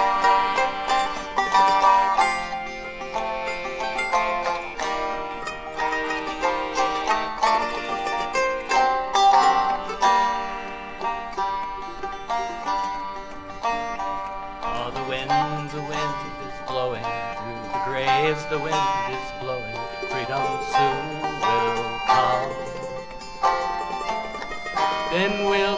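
Live acoustic folk trio playing an instrumental passage: plucked banjo and mandolin over piano accordion. A lower bass part comes in about two-thirds of the way through.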